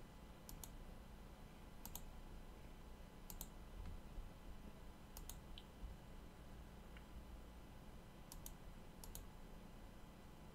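Faint computer mouse clicks: about six of them, each a quick double tick, spaced a second or two apart over a low steady hum.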